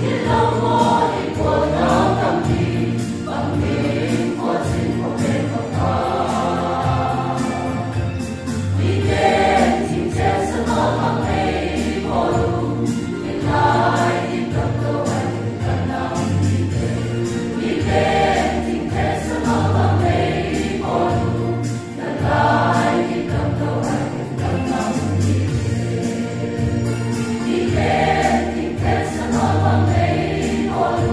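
A large mixed choir of men and women singing a hymn together, continuously and at full voice.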